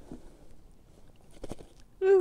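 Faint handling noises from an F1 carp being lifted out of the landing net, with a few soft clicks and knocks about one and a half seconds in.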